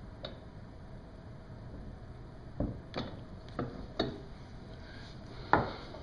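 Light knocks and clicks of wood and metal as a guitar neck in its wooden holder is handled on a small arbor press: a faint click near the start, then four knocks about half a second apart in the second half, and a sharper one shortly before the end.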